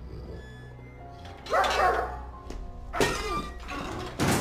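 A large dog barking in a kennel, two loud barks about a second and a half apart, over background music.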